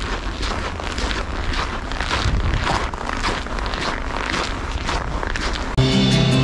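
Footsteps crunching on packed snow at about two steps a second, with wind rumbling on the microphone, in −21 °C cold. Music starts suddenly near the end.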